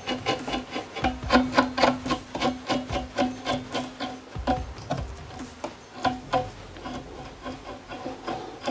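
A stick faced with hook-side velcro is combed along a spun wire-cored dubbing brush, making quick scratchy rubbing strokes, about three a second, as it teases out the fibres. A steady low hum runs under the strokes from about one to four seconds in.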